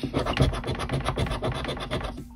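A large metal coin scraping the silver coating off a paper scratch-off lottery ticket in rapid short strokes.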